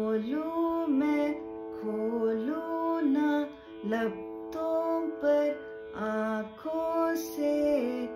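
A woman singing a phrase of a Hindi song melody, moving in small steps and bending between notes, over the steady drone of a shruti box.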